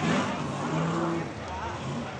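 V8 engine of a Ford Cortina revving hard as the car slides across grass and dirt, its pitch shifting as the throttle changes, loudest right at the start.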